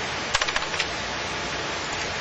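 A quick run of about half a dozen computer keyboard clicks, bunched about half a second in, over a steady background hiss.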